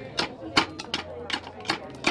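Slate hammer chopping the edge of a roofing slate held over a slate stake: a string of sharp cracks, about three a second, as small pieces are trimmed off.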